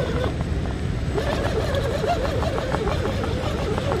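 Electric drive motor and geartrain of a Redcat Gen-7 scale RC rock crawler whining at crawling speed, the pitch rising and falling as the throttle is worked. Light clicks come through as it climbs over the rock.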